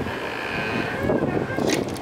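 Wind buffeting the microphone outdoors: a steady, rough rumble.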